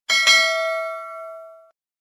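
Notification-bell sound effect: a bell ding struck twice in quick succession, then ringing out and fading over about a second and a half.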